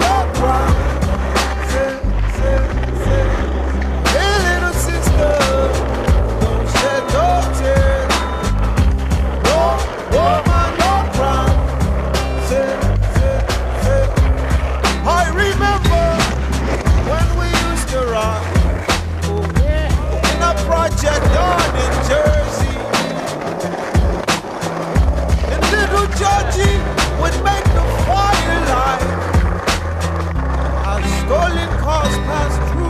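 Music soundtrack with a heavy bass line, mixed with skateboard sounds: wheels rolling on concrete and sharp clacks of the board popping and landing.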